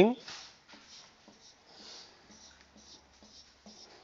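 Whiteboard marker drawn across a whiteboard in a series of short, faint strokes, ruling the dividing lines of a rectangle.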